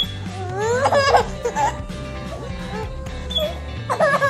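A baby laughing and squealing in delighted bursts, the loudest about a second in, with another burst starting near the end, over background music.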